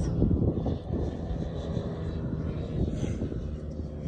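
Steady low engine drone from a distant motor, with no speech over it.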